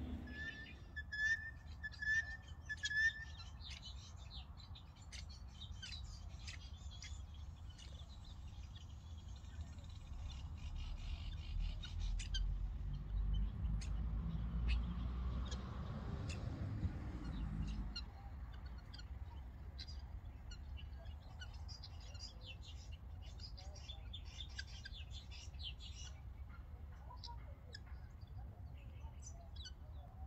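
Birds calling outdoors: many short, high chirps and clicks, with a run of four clear whistled notes in the first few seconds. A low rumble swells up about ten seconds in and stops abruptly near eighteen seconds.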